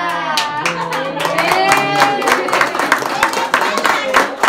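A group of people singing together, joined about half a second in by rhythmic hand clapping, about four claps a second, keeping time with the song.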